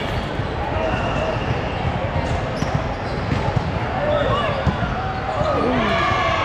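Busy gymnasium during volleyball play: volleyballs bouncing and thudding on the hard floor in quick, irregular succession, under overlapping voices of players and spectators.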